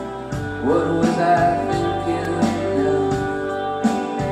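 A live rock band playing a song, guitars over a steady beat.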